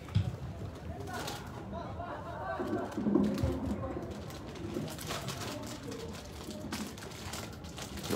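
A football kicked with a single dull thud just after the start, then distant shouts of players across an open pitch, loudest a little after the middle.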